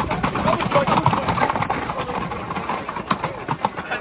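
Hoofbeats of horses and a young bull on an asphalt street as they pass at a run, a rapid cluster of hoof strikes near the end, with onlookers' voices.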